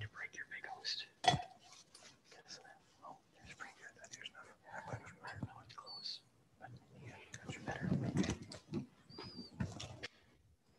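Low whispered speech, with small clicks and knocks of things being handled at the altar and one sharper knock about a second in.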